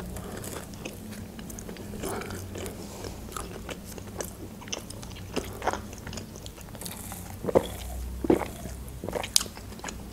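Close-miked chewing of pizza, with scattered crisp crunches and wet mouth clicks. About six to eight seconds in comes a sip of cola through a straw.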